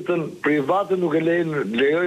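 Speech only: a person talking in a thin, telephone-quality voice, as a caller heard over a phone line.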